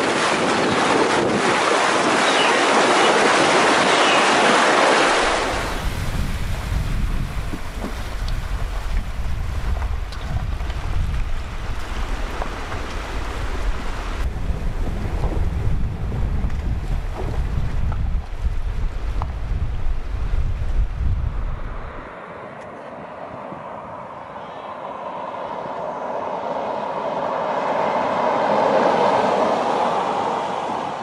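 Water splashing hard against a 2013 Range Rover's wheel as it fords a shallow river. After about five seconds this gives way to a heavy low rumble with scattered knocks as the car crawls over a rocky riverbed. Near the end, tyre noise on tarmac swells as the car drives past.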